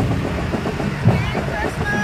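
Street noise of a parade: a school bus engine running as the bus rolls slowly, with voices around it and a steady low thumping beat about twice a second.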